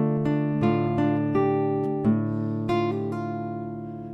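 Nylon-string classical guitar fingerpicked slowly: a D minor arpeggio, single notes left ringing, with a hammer-on and pull-off on the top string.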